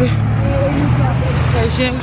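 Steady low rumble of a road vehicle's engine running close by, with a woman's voice over it.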